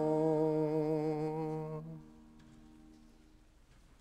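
Congregation singing the held last note of a hymn, which ends about two seconds in. A faint low tone lingers briefly after it.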